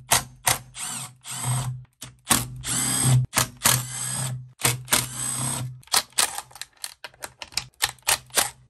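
Milwaukee M12 Fuel cordless impact driver backing the cover bolts out of a Stihl MS 260 chainsaw. It comes in several whirs of half a second to a second each, its pitch rising and falling, then a quick run of short trigger blips near the end.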